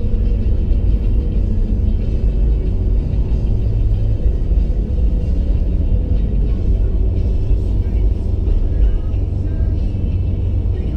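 Steady low rumble of a car driving, heard from inside the cabin, with music playing underneath.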